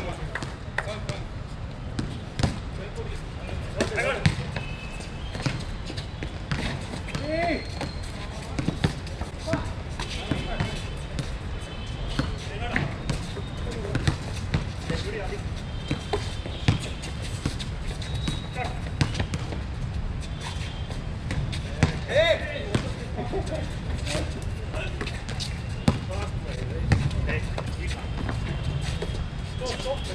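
A basketball bouncing and players' shoes knocking on an outdoor hard court during a pickup game, as irregular sharp thuds, with short distant shouts from the players. A steady low rumble runs underneath.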